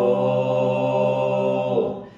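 Unaccompanied mixed voices, men and women, singing a folk hymn in harmony and holding one long chord. It stays steady, then stops shortly before the end.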